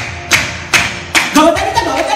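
Qawwali music: steady beats of hand percussion, about two to three strikes a second, over a held harmonium tone, with a singer's voice coming in near the end.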